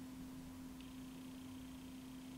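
Quiet room tone with a steady low hum; a faint high whine joins a little under a second in.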